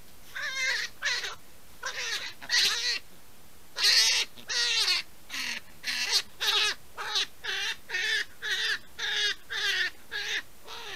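Brown hare screaming in distress while held in a snare: a run of short, high, wavering cries, about two a second, with a brief pause about three seconds in.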